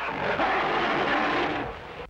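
Old film sound effect of a tyrannosaur roaring, built from a lion's roar and a raspberry played backwards: one long, rough, noisy roar that fades near the end.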